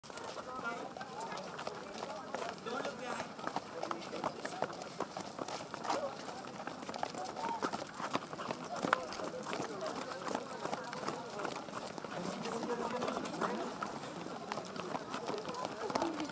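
Footsteps of a crowd of children walking and jogging on asphalt, many scattered steps at once, with a jumble of children's voices chattering.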